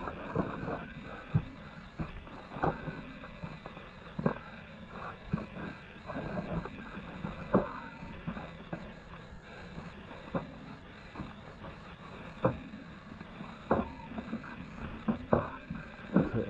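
Irregular knocks and scuffs of a person clambering and stepping over the rocky floor of a cave, one sharp impact every half second to second and a half.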